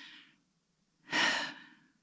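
A person's audible breath between phrases: a short breathy intake about a second in, lasting about half a second.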